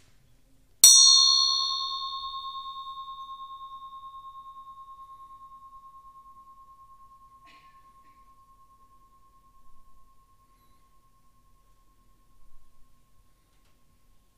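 A single strike on a metal meditation bell, followed by a long ringing tone that wavers as it slowly fades away over about ten seconds.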